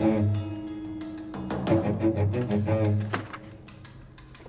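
Tense dramatic background score with low strings holding long notes and shifting higher notes over them, fading down after about three seconds.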